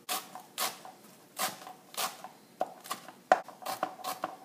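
Chef's knife chopping fresh cilantro on a plastic cutting board: separate knife strikes against the board, irregular at first, then quicker in the last second.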